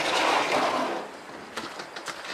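A door being opened: a rushing noise that fades over the first second, then a few faint clicks.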